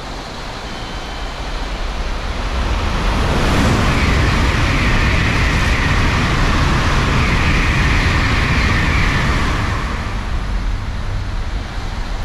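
An N700-series Shinkansen bullet train passing through the station at speed: a rushing roar of air and wheels that builds over the first few seconds, stays loud for about six seconds, then fades away.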